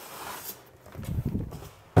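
Cardboard shipping box being slid up off a packed fan, with irregular scraping and rustling of cardboard, packing inserts and plastic bag, busiest about a second in.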